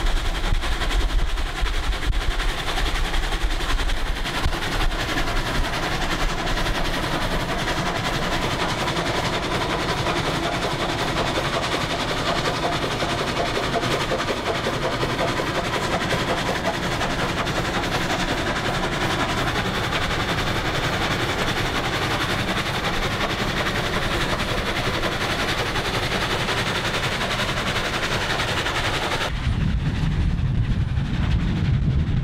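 Union Pacific 844, a 4-8-4 steam locomotive, working upgrade, its exhaust beating in a rapid, even stream of chuffs heard from a car pacing alongside. Just before the end the sound changes to a deeper rumble.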